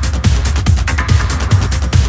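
Hard techno from a DJ mix: a four-on-the-floor kick drum at about 140 beats a minute, with hi-hats ticking between the kicks.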